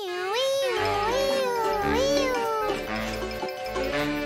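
Cartoon wolf howling: one wavering, high howl that rises and falls three or four times and stops a little under three seconds in, over background music.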